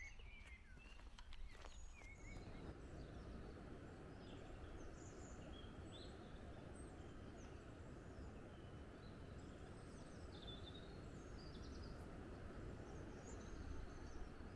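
Faint outdoor ambience: a steady low background noise with small birds chirping now and then. A couple of soft clicks come in the first two seconds.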